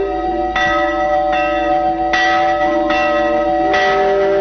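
Large church bell ringing: about four strokes, each one ringing on into the next with long-held overtones.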